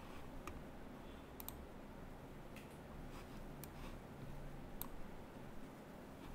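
Computer mouse clicking faintly a few times, about once a second, with one quick double click, over low room hum.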